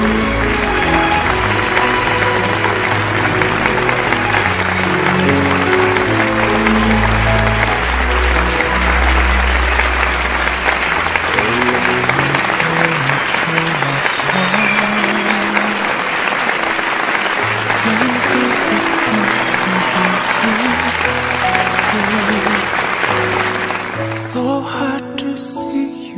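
A crowd of guests applauding steadily over music with a low, stepping bass line; the applause stops abruptly at the very end.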